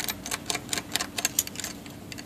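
A brass belt buckle being rubbed hard with a polishing cloth on a desk: quick, irregular scratchy clicks as the cloth and buckle scrub back and forth while it is shined with Brasso. The clicks thin out near the end.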